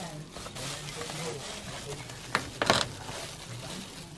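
Quiet talk, with handling noise from foil-faced bubble insulation being pressed against a metal roof and two sharp clicks a little past the middle.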